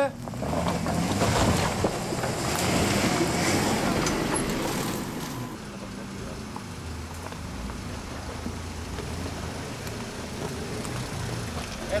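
Jeep SUV engines working under throttle as the vehicles crawl over rocks, the engine note rising and falling. The first half is louder and rougher with a hissing noise over it; from about halfway the sound settles to a steadier, lower engine hum.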